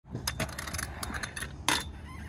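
Kick scooter on concrete: a rapid run of small clicks and rattles, then one loud impact a little before the end as the scooter lands.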